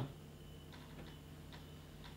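Faint, regular ticking, about two ticks a second, over a low steady hum in a quiet room.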